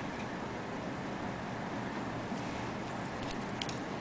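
Steady low room hiss with a few faint light clicks about two to three and a half seconds in, from glass hex-cut seed beads being picked up and strung onto a needle and thread.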